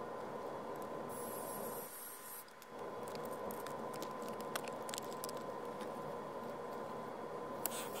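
Light clicks and scrapes of 3D-printed plastic robot parts being handled and fitted together by hand, over a steady background hiss with a faint steady whine.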